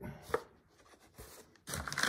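A single light knock, then, near the end, brown packing paper rustling and crinkling as a boxed book is handled on a wooden table.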